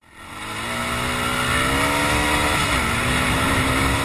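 ATV engine running at high throttle, its pitch climbing slowly with a brief dip near three seconds in, over heavy rumble and rushing noise. The sound starts abruptly.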